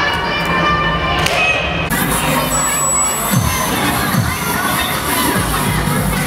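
A crowd of cheer spectators and athletes cheering and shouting, loud and continuous.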